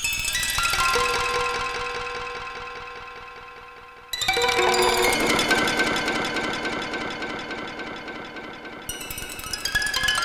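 Novation Summit polyphonic synthesizer playing a custom preset: a chord of sustained notes struck at the start and fading slowly. About four seconds in, a louder passage of fast repeating notes begins, and a brighter high layer joins near the end.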